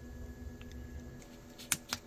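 Quiet room hum with two short, faint clicks near the end.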